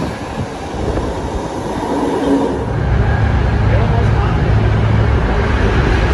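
A BART train pulling into the station platform, then the loud, steady low rumble of riding inside a moving BART car, which sets in about three seconds in.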